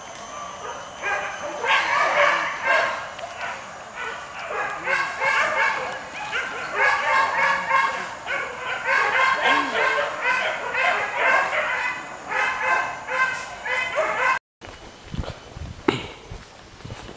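A pack of hunting dogs yelping and barking excitedly, many high-pitched overlapping yelps in quick succession. It cuts off suddenly near the end.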